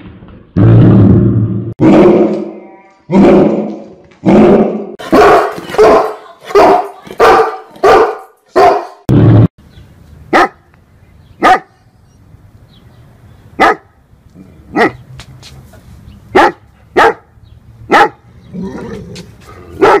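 St. Bernard barking: a run of deep, drawn-out barks that come faster and faster over the first nine seconds, then short, sharper single barks spaced a second or more apart.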